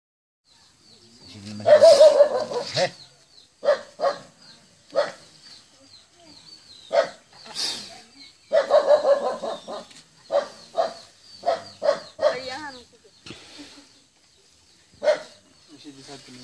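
An animal barking in short, sharp bursts mixed with people's voices. The barking starts about a second and a half in and comes in loud clusters, with a short lull near the end.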